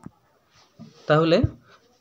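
A man's voice speaking a short drawn-out word about a second in, with faint scratching of a stylus writing on a tablet screen.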